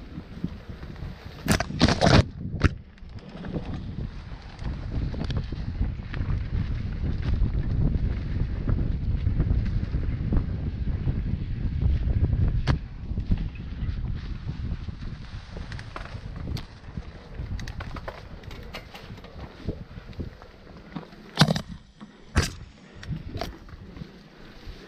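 Mountain bike riding over a rough dirt singletrack, heard through an action camera. A low rumble of wind and trail vibration on the microphone grows louder through the middle. Sharp knocks and rattles come from the bike over bumps about two seconds in and again near the end.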